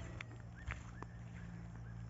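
Faint footsteps through dry grass and brush, with a few light crackles and clicks over a low steady hum.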